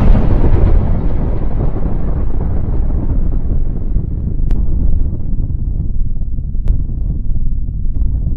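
Explosion sound effect: the loud blast at the start gives way to a long, low rumble that slowly loses its higher tones.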